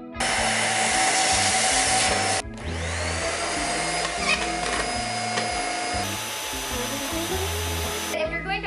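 Deerma handheld corded vacuum cleaners running in three short clips, cut together about two and a half seconds in and again about six seconds in. At the start of the second clip the motor whine rises as it spins up, then holds steady. Background music plays underneath.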